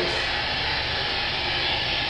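Steady, hissing buzz of a homemade Tesla coil's electrical discharges, played back over a room's loudspeakers.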